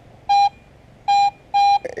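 A Garrett AT-series metal detector gives three short, steady high-tone beeps as the coil sweeps over a target. The signal reads about like a copper penny.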